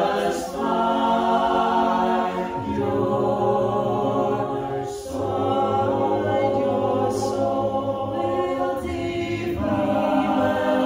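Mixed-voice a cappella group singing slow, held chords over a low bass line, with no instruments. The chord changes about two and a half and five seconds in, with brief soft 's' sounds at some of the changes.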